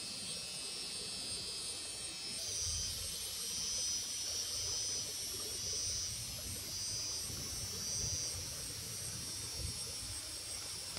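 Insect chorus, a high-pitched buzz that swells and fades in repeated pulses, starting a couple of seconds in after a steadier hiss, over a low uneven rumble.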